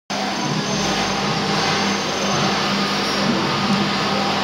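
Fiber laser marking machine running while it marks a metal brake disc, giving a steady hiss with a low hum underneath.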